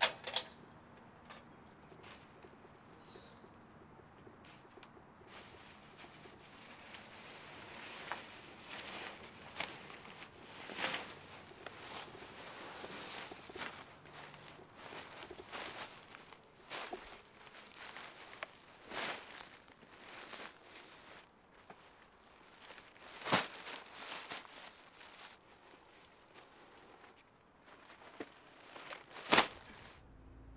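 Footsteps with scattered clicks and knocks at an irregular pace, over a low steady background. A few louder knocks stand out, one about two-thirds of the way in and one just before the end.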